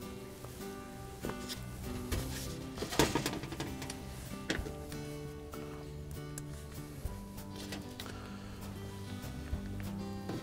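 Soft background music of held, sustained notes, with a few light knocks from a plastic refrigerator evaporator cover being handled, the sharpest about three seconds in.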